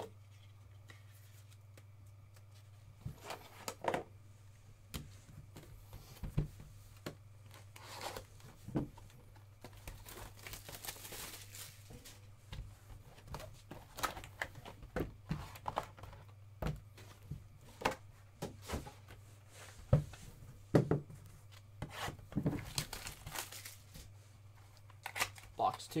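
Sealed trading-card hobby box being opened by hand and its boxed packs handled: wrapping tearing and cardboard rustling, with scattered taps and knocks. A steady low electrical hum runs underneath.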